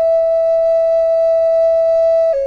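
End-blown wooden flute of sassafras and vera wood, keyed in F sharp, holding one long, steady note.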